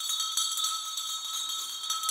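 Shimmering high-pitched chime of several bell-like tones ringing together steadily.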